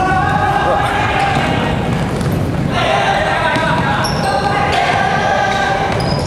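Indoor futsal in an echoing sports hall: the ball struck and bouncing on the wooden floor, sneakers on the boards, and players' and bench voices calling, with long held high-pitched squeals.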